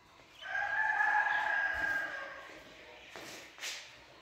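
A rooster crowing once, a single long call of about two seconds, followed near the end by two brief noisy scuffs.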